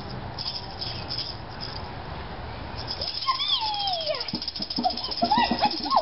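Hand-shaken rattle percussion, with a pitched sound sliding down in pitch about three seconds in and short pitched calls near the end.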